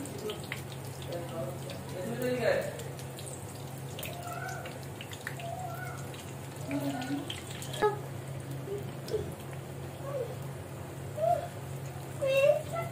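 Battered eggplant slices (beguni) deep-frying in hot oil in a pan, a steady sizzle. A wooden stick turning the fritters knocks sharply against the pan a couple of times.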